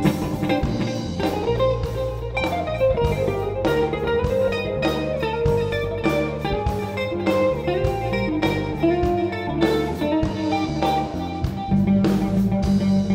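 Live jazz trio playing: an electric guitar picks a moving single-note melody over an electric bass line and a drum kit keeping time.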